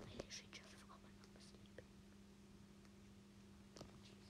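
Near silence: room tone with a low steady hum, a few faint whispered breaths in the first second or so, and a soft click near the end.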